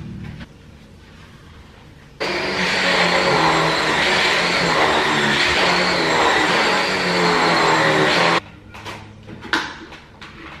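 Stick vacuum cleaner switched on about two seconds in, running steadily with a high whine over its suction as it goes over a rug, then switched off suddenly about six seconds later. A few knocks and clicks follow near the end.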